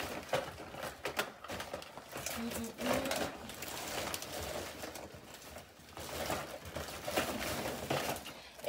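Cosmetic packaging being handled: scattered clicks, taps and rustling of boxes and plastic wrap.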